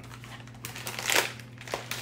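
A LEGO parts bag crinkling as it is handled and pulled open, in irregular crackles with the busiest burst about a second in.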